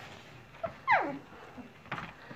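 A two-and-a-half-week-old standard poodle puppy gives one short, high whine about a second in, its pitch falling steeply.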